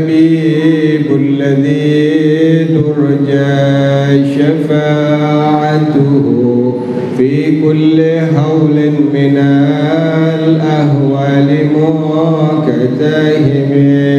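A man's voice singing an Arabic sholawat into a microphone, in a chanted style with long drawn-out notes and a short break for breath about seven seconds in.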